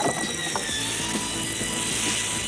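Film sound effect of blood spraying from a sword wound: a steady rushing hiss, over sustained synthesizer score tones.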